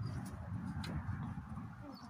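Muscovy ducks making soft, low cooing calls, choppy and uneven, with a few faint ticks.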